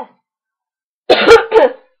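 A young woman coughing twice in quick succession, two loud coughs about a second in.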